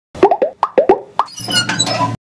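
Animated logo sound effect: a quick run of about nine bubbly plops, each falling in pitch, followed by a twinkling chime over a low hum.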